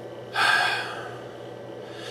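A man's quick, audible in-breath through the mouth about half a second in, fading away within half a second, over a faint steady hum of room tone.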